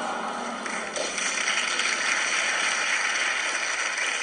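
Studio audience applauding, the clapping growing fuller about a second in.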